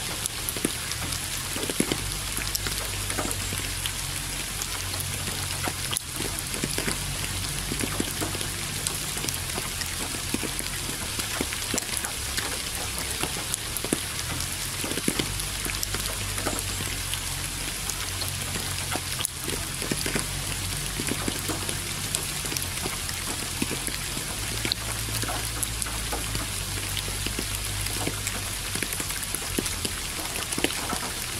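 Steady rain, with many separate drops heard as short sharp ticks, over a low hum that steps between pitches every few seconds.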